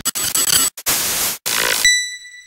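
Logo-sting sound effect: bursts of static-like hiss broken by two short dropouts, then a single ding near the end that rings on.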